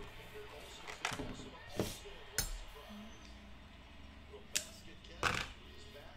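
About five sharp clicks and knocks of small objects being handled on a table, the loudest about halfway through, over faint background talk from a baseball commentary.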